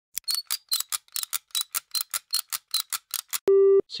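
Typewriter-style keystroke sound effect: a quick, even run of about seventeen sharp clicks, roughly five a second, each with a bright ring, for a title being typed out. Near the end it stops and a short, loud, steady beep sounds for about a third of a second.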